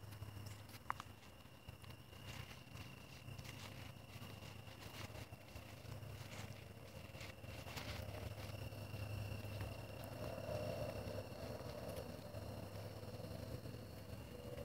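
Soft footsteps and scattered light clicks on a concrete sidewalk, with a thin steady high tone and a low hum behind them.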